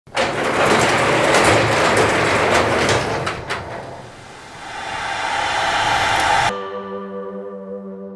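Garage door rolling open on its tracks: a loud rattling rumble with many sharp clicks that eases off about halfway, swells again and cuts off suddenly; a sustained ambient music chord follows near the end.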